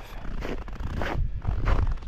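Footsteps crunching on dry, very cold packed snow: a few uneven steps.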